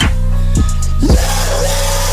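Trap metal music playing: a heavy, sustained bass under a harsh wash of distorted noise.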